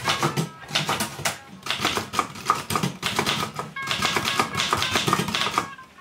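Vintage manual typewriter keys struck in quick runs: a rapid clatter of sharp clicks with brief pauses between bursts.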